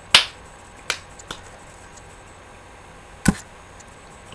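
Four sharp clicks at uneven intervals over quiet room noise; the first, just after the start, and the last, about three seconds in, are the loudest.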